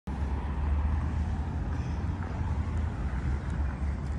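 Outdoor city ambience at night: a steady low rumble with a faint hiss above it.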